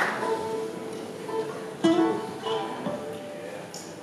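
A few scattered notes plucked on acoustic string instruments, with a sharper pluck about two seconds in. Each note rings out and fades.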